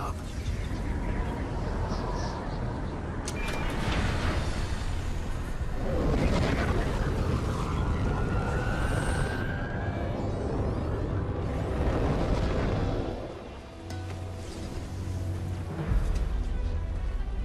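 Film soundtrack: dramatic score music layered over a deep, continuous rumble of sound effects, with a large sweeping whoosh about six seconds in.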